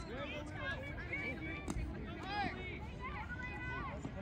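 Indistinct chatter of several voices at once, none of them clear, with one sharp click a little under two seconds in.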